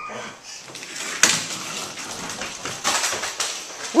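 Small wheels of a toy doll stroller rolling and rattling across a hardwood floor, with a sharp knock about a second in and a louder stretch near the end.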